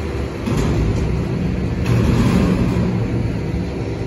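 Heil Half/Pack Freedom front-loader garbage truck's diesel engine running and revving as the truck pulls forward, louder from about two seconds in. Two brief sharp sounds stand out, about half a second and two seconds in.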